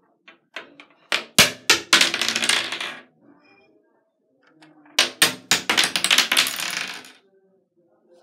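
Small hard plastic toy figures dropped onto the bottom of an empty bathtub, clattering and skittering across the hard tub surface, twice: once about a second in and again about five seconds in, each time a few sharp knocks running into a rattle that dies away after about two seconds.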